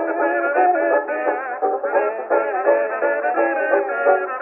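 Kazoos buzzing a blues melody together with banjo accompaniment, played back from a 1924 Edison Diamond Disc. The sound is thin and narrow, with no deep bass and no high treble, as on an acoustic-era recording.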